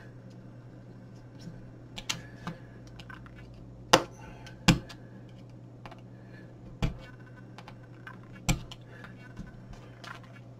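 Irregular sharp clicks and knocks of a small screwdriver and the plastic housing of a touchscreen weather display being handled during disassembly, the loudest two around four and a half seconds in, over a low steady hum.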